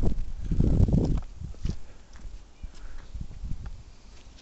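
Wind buffeting the microphone with a loud low rumble for about the first second, then fading to lighter gusts under irregular footsteps on stone paving.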